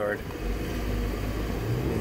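A moving car heard from inside the cabin: a steady low rumble that grows louder about half a second in.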